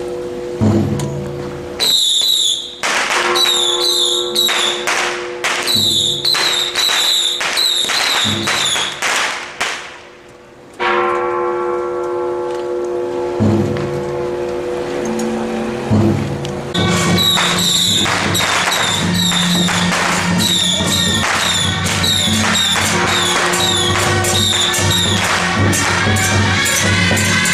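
Taiwanese temple procession music: cymbals and gongs clash in a quick, ringing rhythm over a held melodic tone. The clashing breaks off for several seconds mid-way, leaving the held tone, then starts again.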